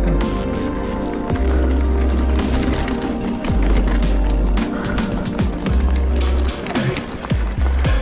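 Electronic dance track with a heavy bass line that cuts in and out, over the rattle and rolling noise of a mountain bike on a rocky dirt trail.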